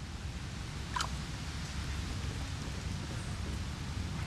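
Steady natural background noise of a mangrove swamp, a low rumble under an even hiss, with one short sharp click about a second in.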